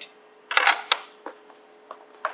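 Unboxing handling noise: a short burst of clicks and clatter about half a second in as the fabric-covered kickstand is set down on a wooden table and the cardboard insert in the box is lifted, then one faint tick.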